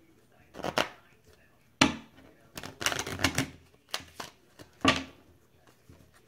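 A deck of playing cards being handled on a tabletop: a run of sharp clicks and taps as the cards are shuffled, squared and set down, with a quick flurry of clicks about three seconds in.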